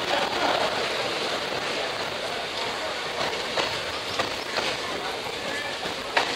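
Indian Railways passenger coach rolling slowly out of a station, heard from the open door: a steady rumble of wheels on rail, with several sharp clicks from about halfway as the wheels pass over rail joints.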